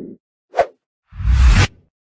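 Title-card sound effects: a short pop about half a second in, then a whoosh with a deep low end about a second in, lasting about half a second.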